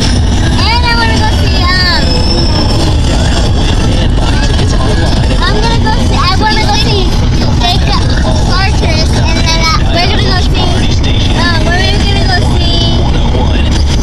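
Steady road and engine rumble inside a moving car's cabin, with children's high-pitched voices squealing and chattering over it throughout.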